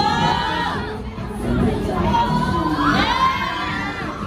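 Crowd of onlookers cheering and shouting in high-pitched voices, in two bursts: one at the start and one about three seconds in, over quieter pop music.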